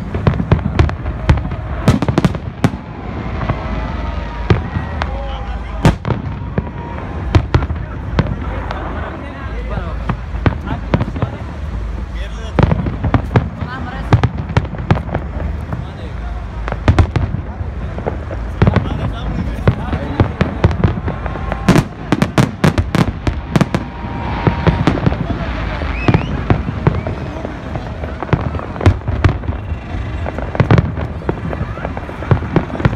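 Aerial fireworks bursting overhead: loud, irregular bangs and cracks, with a dense run of rapid bangs about three-quarters of the way through. People's voices can be heard underneath.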